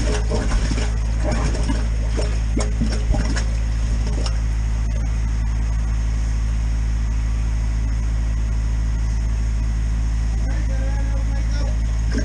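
Drain-clearing machine's engine running with a steady low hum, with scattered knocks and clatter in the first few seconds as the line is fed down the brick chamber.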